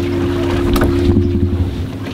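Wind buffeting the microphone and water rushing past a small boat moving across open sea, over a steady low hum.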